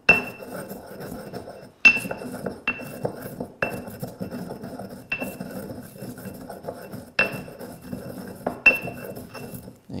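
Stone pestle pounding and grinding dried arbol peppers and coarse salt in a stone mortar: about seven sharp knocks at uneven intervals, each with a short ringing tone, with gritty crunching and scraping between them.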